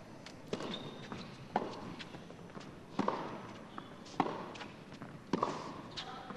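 Tennis ball struck back and forth in a rally on an indoor hard court: five sharp racket hits about a second apart over a faint arena background.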